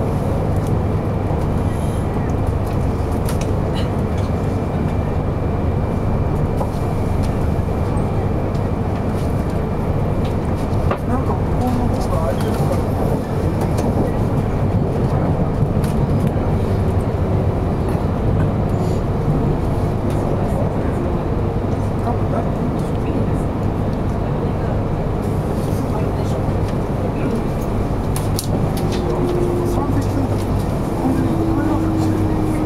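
Steady running noise inside the passenger cabin of a 200 series Shinkansen train: a continuous low rumble from the wheels and track, even throughout.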